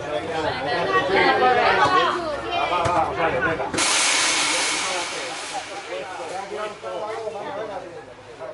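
People talking, then a sudden loud hiss about halfway through that fades away over about two seconds.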